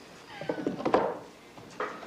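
A domestic cat meowing once with a falling cry, mixed with a few light knocks.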